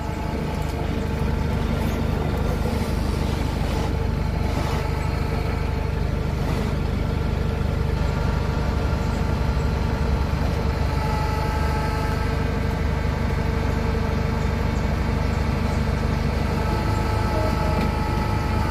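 Flatbed tow truck's engine running steadily to drive its winch, hauling a car slowly up the bed: a continuous even mechanical drone with a fixed pitch.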